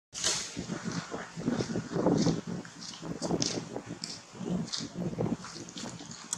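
Close, irregular sounds from a macaque mother and her nursing baby, uneven and stop-start, with short hissy rustles mixed in.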